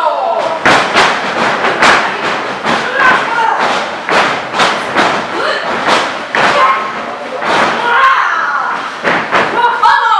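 Repeated sharp thuds and slaps from a wrestling match, roughly two or three a second, with voices calling out over them.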